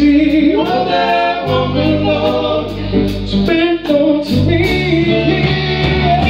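Live rock band playing, with a sung vocal line over electric guitars and held bass notes.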